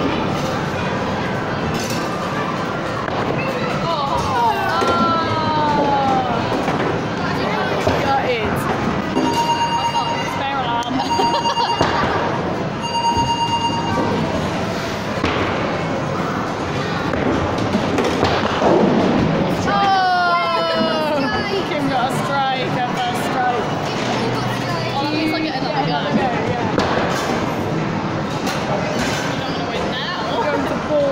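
Busy bowling-arcade din: background voices and electronic game sounds, with knocks from balls and pins. Three long, steady electronic beeps sound about ten seconds in, and falling sweeping tones come twice.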